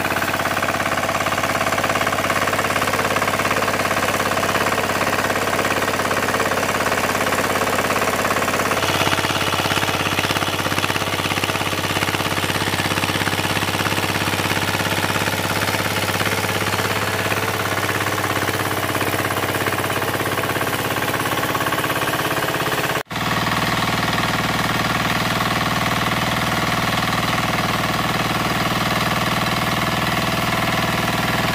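Kirloskar power tiller's single-cylinder engine running steadily under load while its rotary tines churn through dry, stony soil. The sound breaks off for an instant about 23 seconds in.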